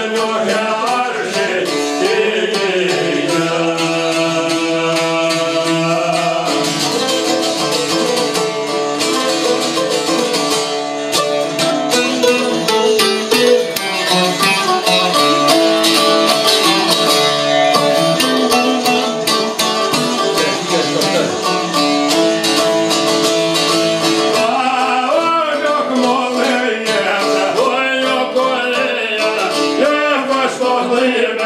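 Albanian folk music on çifteli long-necked lutes: fast, tremolo-picked melody as an instrumental passage, with men's singing heard briefly at the start and coming back about 25 seconds in.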